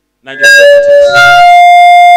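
Loud howl of microphone feedback through a public address system: one sustained tone that wavers at first, jumps to a higher steady pitch about a second in, and holds.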